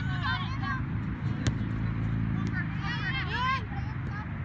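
Voices calling out across a soccer field, a short burst near the start and a louder, high-pitched one near the end, over a steady low rumble, with a single sharp knock about a second and a half in.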